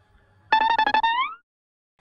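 Short plucked-string music sting: one note struck in rapid repetition for about a second, sliding upward in pitch at the end.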